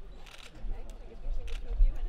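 Indistinct chatter of a small group of people with a few camera shutter clicks as a group photo is taken.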